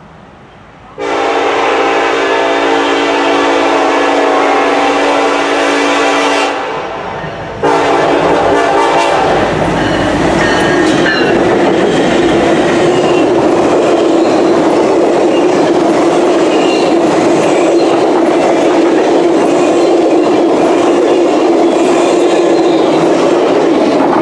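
Union Pacific SD70AH locomotive sounding its multi-chime horn, one long blast of about five seconds and then a short one, as it approaches. The locomotive and its train of passenger cars then pass close at speed with a steady rushing sound, a steady hum and wheels clicking over the rail joints.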